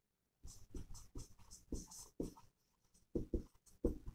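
Marker pen writing on a whiteboard: a run of short, irregular, faint scratching strokes.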